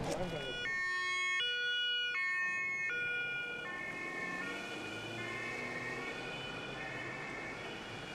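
German police car's two-tone siren (Martinshorn) sounding, alternating between a high and a low note about every three-quarters of a second. It is loudest over the first few seconds and then carries on fainter from about four seconds in.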